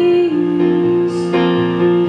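Live song accompaniment: sustained instrumental chords that change a few times, with no singing in this stretch.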